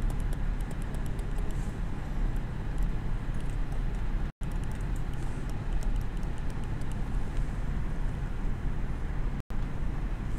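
Steady low rumble of background room noise with faint high ticks. The sound cuts out completely for an instant twice, about four and a half seconds in and just before the end.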